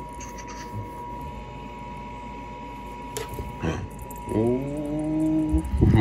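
A cat pawing and scratching at a carpeted stair: two short scratches a little past the middle, over a steady high hum. A person's drawn-out low hum follows near the end.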